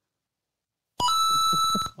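A livestream donation alert chime: a bright, bell-like ding of several held ringing tones lasting just under a second. It comes after about a second of dead silence and signals an incoming paid viewer message.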